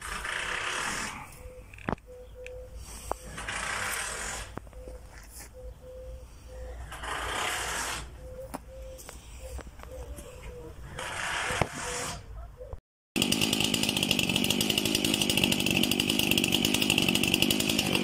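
A Stihl MS 271 two-stroke chainsaw runs steadily, starting abruptly about thirteen seconds in after a break. Before that there are only quieter, intermittent bursts of noise.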